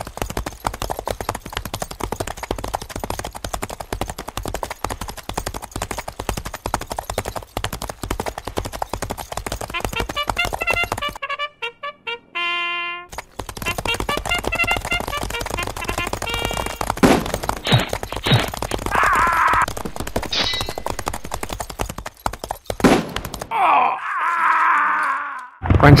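Battle sound effects: a dense, rapid crackle of gunfire mixed with men shouting. About eleven seconds in it breaks off for a brief single held pitched note, then the fire and shouting resume, with louder noisy bursts near the end.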